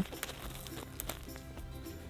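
Soft background music with steady tones, under faint rustling and small clicks as a hand works the soil and landscape fabric around a seedling, one click sharper about a second in.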